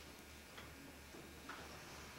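Near silence: a faint steady low hum with a couple of soft clicks, about half a second in and again around a second and a half in.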